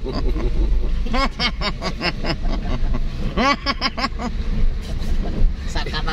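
Steady low rumble of a car's engine and road noise heard inside the cabin, with men's voices over it.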